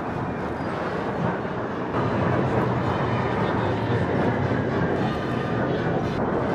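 Jet aircraft flying over in formation: the steady rush of their engines, growing a little louder about two seconds in.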